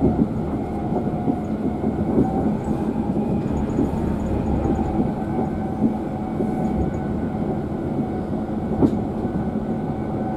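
Steady low rumble of a passenger train carriage's wheels running on the track, heard from inside the carriage. There is a single sharp knock about nine seconds in.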